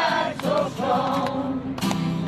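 A choir singing a song, the voices wavering on held notes over a steady low accompaniment.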